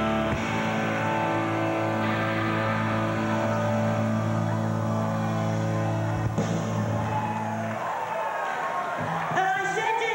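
Live rock band with electric guitars holding a long sustained chord, which cuts off about eight seconds in; a voice and crowd noise follow near the end.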